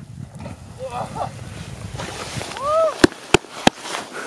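Wind rumbling on the microphone with faint distant shouting, then one short rising-and-falling whoop of a cheer. Three sharp clicks follow in quick succession near the end.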